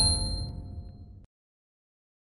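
Chime tones of a logo sting ringing out and fading, then cutting off to silence a little over a second in.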